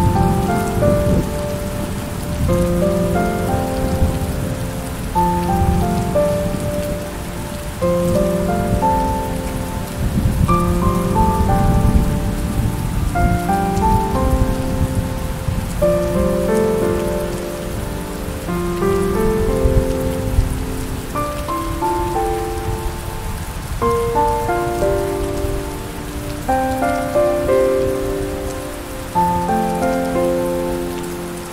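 Steady rain falling, with a slow, soft melody of held notes playing over it.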